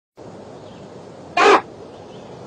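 A single short, loud, harsh bird call about a second and a half in, over a steady hiss.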